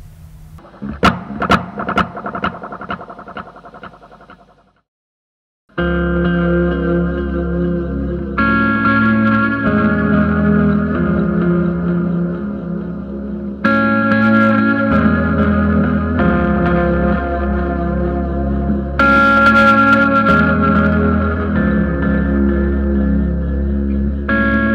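Clean electric guitar through stacked modulated delay pedals, a Mag Field with a Nux Time Core delay. A few picked notes trail off in echoing repeats, then after a short silence about five seconds in, a fuller riff rings on in thick, overlapping delay.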